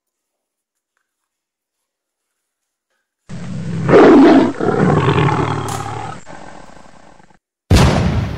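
A big cat's roar, loud and rough, starting about three seconds in and fading away over about four seconds. A second sudden loud sound begins just before the end.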